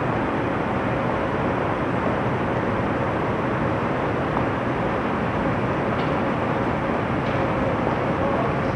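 A steady outdoor city roar, an even rushing noise like distant traffic that holds one level throughout, with a faint steady hum under it.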